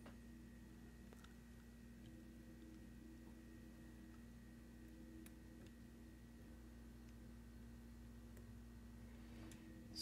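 Near silence: room tone with a steady faint hum and a few faint, isolated ticks.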